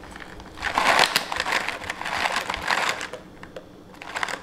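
Mixed dried fruit and nuts poured from a plastic tub into a bowl: a dense rattle of many small pieces sliding against the plastic and dropping, starting about half a second in and easing off after about three seconds.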